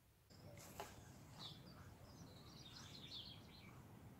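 Near silence: faint room tone with faint, high bird chirps in the background, and one faint click about a second in.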